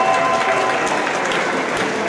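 Audience applauding steadily, with a few voices cheering over the clapping.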